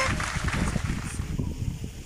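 A pencil drawing on a paper worksheet lying on a table, heard as low, irregular rubbing and knocking.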